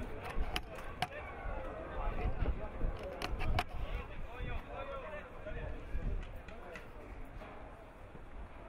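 Voices of players and coaches shouting across an outdoor football pitch during play, with a few sharp knocks about half a second and a second in and a quick cluster of them around three and a half seconds.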